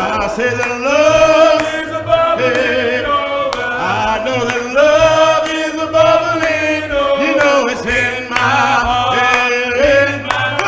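A man singing a slow gospel song into a microphone in long, held, gliding notes, with a low steady accompaniment underneath.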